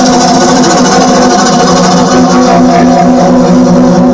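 Synthesizer keyboard playing one steady held chord with a string-like sound. One upper note drops out near the end.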